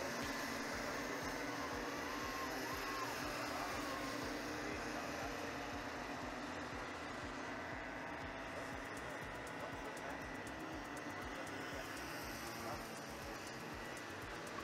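Racing karts' engines heard from trackside as a distant pack: a steady drone, with a few faint rising and falling whines as they rev through corners.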